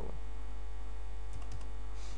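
Steady low electrical mains hum on the recording, with a few faint keyboard taps a little past halfway.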